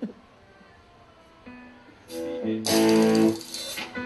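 Guitar chords strummed through a live band's PA after a short pause: a chord rings out about two seconds in, a louder strummed chord follows a moment later and fades near the end.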